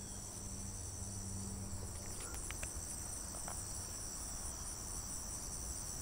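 A steady, high-pitched chorus of insects chirring outdoors, with a few faint clicks a little over two seconds in.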